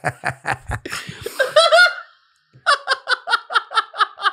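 Two men laughing hard in turn: a run of quick rhythmic laughs and a breathy high laugh, a brief pause about two seconds in, then a second run of rapid, higher-pitched laughs.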